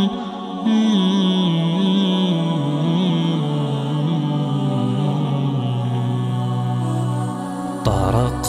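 Wordless, layered male vocals of an a cappella nasheed, humming a slow, wavering melody over a sustained low drone; toward the end the harmony settles onto a long held note.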